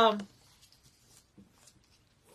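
A woman's drawn-out "um" trailing off right at the start, then faint, scattered soft rustles of paper being handled.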